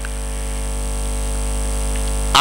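Steady electrical mains hum with a buzzy edge from the microphone's public-address sound system, slowly growing louder.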